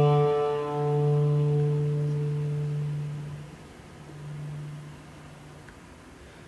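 Acoustic Balkan folk ensemble holding a long sustained chord that rings and fades out after about three seconds. A softer low note swells briefly about four seconds in, then the music goes quiet.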